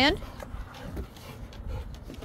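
Rottweilers moving about on a wooden deck: a few faint clicks of claws on the boards over a low rumble.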